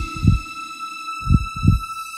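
Heartbeat sound effect: two lub-dub double thumps, the second about a second and a third after the first, over a steady high held tone.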